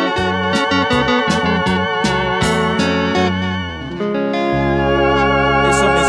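Live instrumental hymn music from electric guitar, electric bass and a Yamaha keyboard with an organ sound. A steady beat runs through the first three seconds, then gives way to held organ chords about four seconds in.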